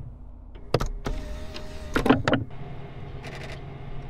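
Sharp mechanical clicks of a race car's steering wheel being handled and locked onto its quick-release hub, one about a second in and a cluster around two seconds. Between them is a short steady whine, over a low steady hum.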